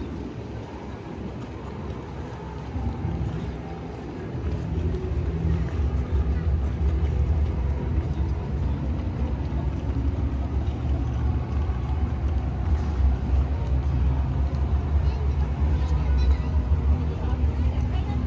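Outdoor city ambience: a steady low rumble, quieter for the first few seconds and then louder, with faint voices in the background.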